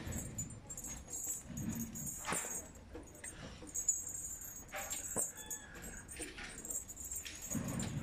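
Faint metallic jingling and clinking, with two sharp knocks about two and five seconds in.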